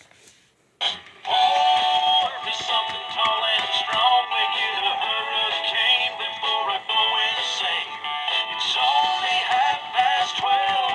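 Gemmy Happy Shuffler Hawaiian Santa animated plush playing its song, a sung tune through its small built-in speaker. The song starts suddenly about a second in, once the toy is activated.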